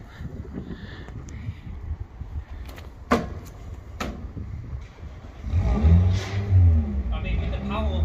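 A car engine revving loudly from about five and a half seconds in, a deep rumble rising and falling in pitch. Before it, two sharp knocks about a second apart.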